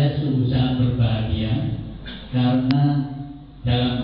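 A man speaking in Indonesian at length, with short pauses, in a flat, even voice.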